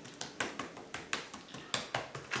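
A brush chopping, or dabbing, into a wet epoxy flood coat on a countertop: quiet, light taps about three a second.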